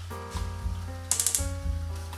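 Background music with plucked, held notes over a steady bass. About a second in, a brief rattle of rapid sharp clicks lasting well under half a second.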